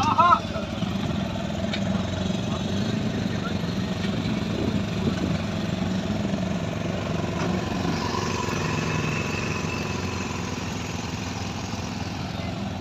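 Adventure motorcycle engines idling together in a steady low rumble.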